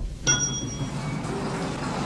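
A single bright metallic ding just after the start, ringing on for about half a second before fading.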